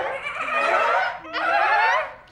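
A woman's long, high-pitched, wavering squeal of excitement, drawn out in two breaths with a short break just after a second in.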